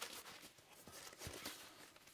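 Faint rustling and a few soft ticks from a padded, fabric-covered guitar-case insert panel being handled.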